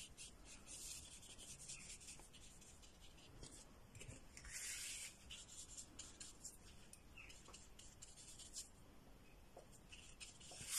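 Faint, quick strokes of a paintbrush laying gouache onto paper, several a second, with one longer swish about halfway through.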